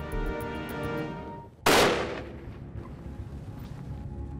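Background music with sustained tones and a ticking beat drops away. About a second and a half in comes a single loud rifle shot from a Savage rifle, with a short ringing tail, and the music carries on quietly after it.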